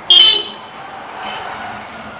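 A vehicle horn gives one short, very loud toot about a quarter second long right at the start, followed by the steady engine and road noise of riding along a street.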